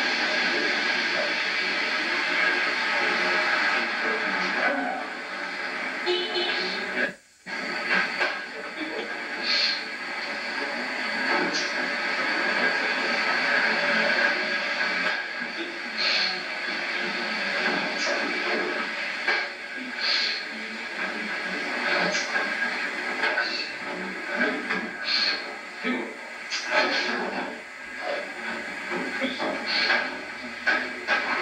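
Indistinct, muffled talk that can't be made out as words, under heavy steady hiss from an old camcorder tape. The sound drops out sharply for a moment about seven seconds in.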